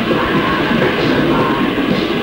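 Loud, dense hardcore punk recording, distorted electric guitar, bass and drums playing without a break, with a muffled, low-fidelity sound that has no top end.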